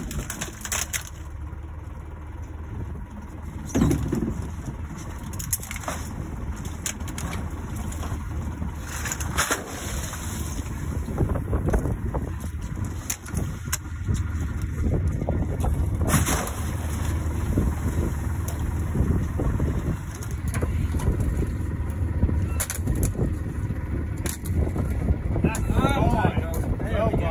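Low, steady hum of an idling boat engine, with scattered knocks and clatter as live scallops are handled in rope-netted holding cages.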